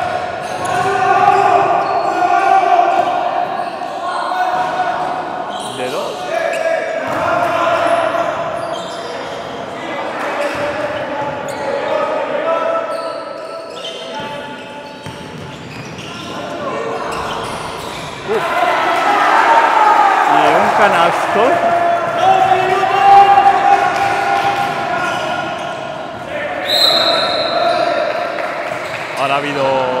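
A basketball bouncing on a gym's hard floor during play, with players' and spectators' voices calling out, echoing in a large sports hall.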